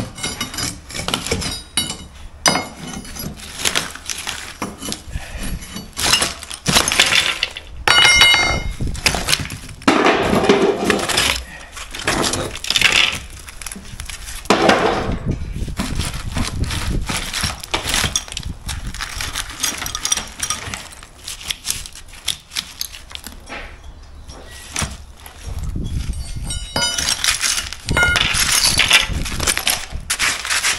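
Old brickwork and hard 3-to-1 sand-and-cement mortar being broken out with a steel bar and by hand: irregular knocks, scrapes and clinks as bricks and rubble are levered loose and dropped. One strike about eight seconds in rings like metal.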